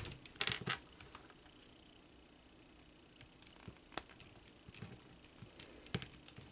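Plastic Iron Man Mark XXI action figure handled and posed in the hands: faint clicks and rubbing of its plastic joints, with a cluster of clicks in the first second and a few scattered ones later.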